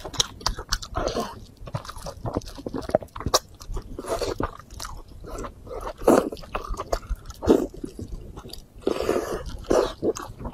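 Close-miked eating: biting and chewing spicy, sauce-coated meat, wet mouth sounds with sharp clicks and crunches at about one bite a second, loudest around six seconds in and again near the end.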